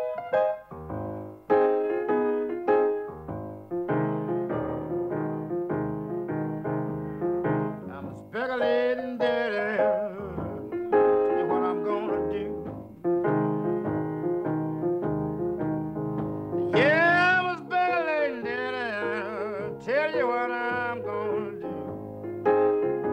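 Solo blues piano on an acoustic grand piano, playing the song's introduction with a rolling left hand and right-hand chords. A man's voice joins twice with long, wavering wordless notes, about eight seconds in and again about seventeen seconds in.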